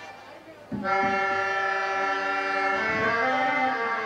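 Harmonium playing held reedy notes that come in about a second in after a short lull, with the lower notes changing near the end.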